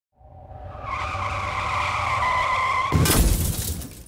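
Logo sound effect: a tyre screech that rises in for nearly three seconds, cut off by a sudden loud crash that dies away within about a second.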